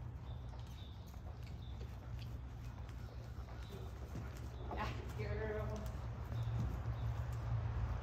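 A Thoroughbred mare's hoofbeats trotting on soft sand arena footing, over a steady low hum. About five seconds in, a short pitched call with a wavering tone stands out.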